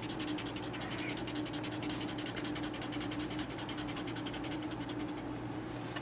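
A paper stump (blending stump) scrubbed rapidly back and forth on charcoal-covered drawing paper, laying in a dark cast shadow. The fast, even scratchy strokes stop about five seconds in.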